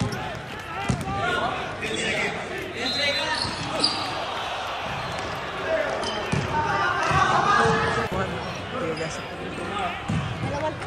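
A basketball bouncing on the hard floor of an indoor gym as it is dribbled and played, with players' voices calling out around it.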